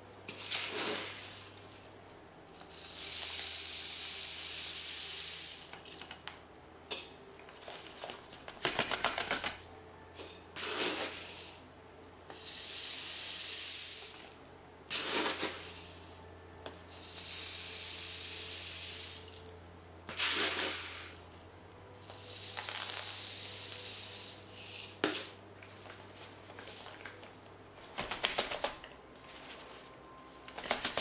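One-millimetre activated carbon beads poured from a plastic bucket into a clear Deltec FR-509 carbon reactor tube, filling it to the top: a hissing rattle of beads in four long pours of two to three seconds each, with shorter rattles and clicks between them. A low steady hum runs underneath.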